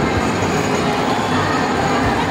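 Small electric kiddie train ride running along its track, a steady rumble of motor and wheels.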